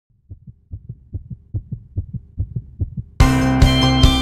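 A fast heartbeat sound of quiet paired low thumps, lub-dub, a little more than twice a second. About three seconds in, the full band comes in suddenly and loudly with guitars and drums.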